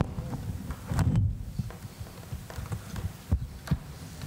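Irregular low thumps and a few sharp knocks of equipment being handled at a lectern, picked up through the lectern's microphone.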